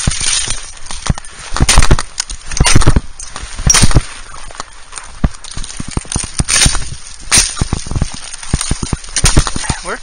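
Fiskars brush axe chopping through shrub stems: a string of sharp chops, the loudest about two, three and four seconds in and again near seven seconds, with smaller knocks and branch snaps between.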